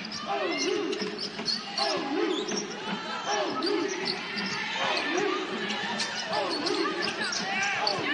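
A basketball being dribbled on a hardwood court, the bounces heard over a steady hum of voices in a large arena.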